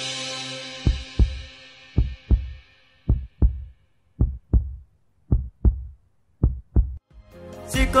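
Song fades out and a heartbeat sound effect takes over: six paired low thumps, lub-dub, about one pair a second. The music and singing come back in near the end.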